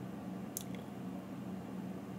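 Quiet room with a steady low hum, and one faint click about half a second in from trading cards being handled.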